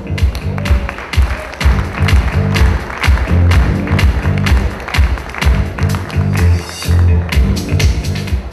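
Loud walk-on music played over the hall's sound system, with a heavy pulsing bass beat and sharp percussion.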